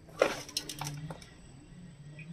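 Handfuls of shredded salted bamboo shoots rustling as they are handled and dropped into a glass jar. The loudest rustle comes about a quarter second in, followed by about a second of softer handling that fades out.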